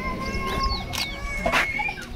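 Public-address feedback: a steady high ringing tone held through the pause, with a lower tone dropping out partway. Short bird chirps sound over it, along with two sharp clicks about a second and a second and a half in.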